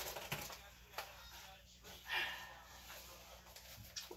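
Faint handling noise: a towel rustling and a few light taps as hands press and work over a cloth-covered table, with a short breathy swell about two seconds in.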